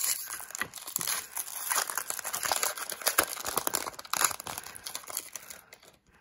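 Foil wrapper of a trading-card pack crinkling and tearing as it is opened by hand, a dense run of crackles that dies away near the end.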